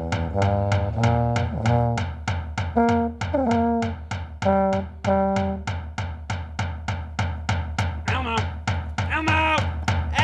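A small hand-held drum beaten steadily, about four beats a second, while a tuba plays separate held low notes over it for the first half. The tuba drops out about halfway, leaving the drum alone, and a few higher sliding notes join near the end.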